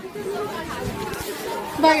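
Speech only: indistinct chatter of voices, with a girl saying "bye" near the end.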